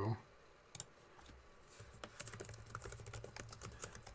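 Computer keyboard being typed on: a quick, uneven run of key clicks, sparse at first and thicker over the last couple of seconds, as a name is typed in.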